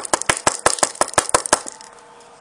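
Fly-tying hair stacker holding a clump of deer body hair, rapped on a table in a quick run of about ten sharp taps, roughly six a second, stopping about a second and a half in. The tapping evens up the cut ends of the hair.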